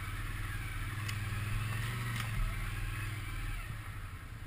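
Can-Am Outlander 650 ATV's V-twin engine running steadily as the quad crawls along a rough trail.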